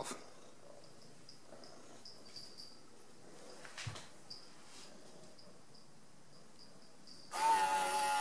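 Quiet room tone for about seven seconds, then near the end the Lockstate LS-DB500 keypad deadbolt's motor runs for about a second and a half, driving the bolt closed: the auto-lock engaging again after the lock was power-cycled.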